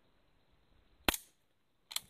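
A gun's action clicking on an empty chamber: a sharp click about a second in and a second, shorter click near the end. The gun was never loaded.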